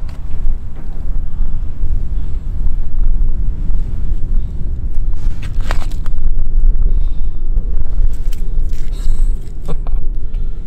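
Wind buffeting the microphone: a loud low rumble that rises and falls unevenly, with a couple of brief clicks, one about halfway through and one near the end.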